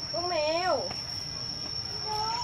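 A steady high-pitched insect buzz runs throughout. In about the first second a young child makes a short, wavering sing-song vocal sound.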